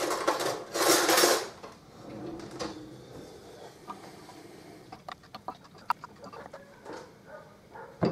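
Spoon stirring semolina soaked in milk in a bowl and knocking against its sides: a brief rushing noise about a second in, then a run of light clinks and taps in the second half.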